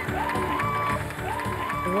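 Background music with a steady beat and long held notes that slide up into pitch twice.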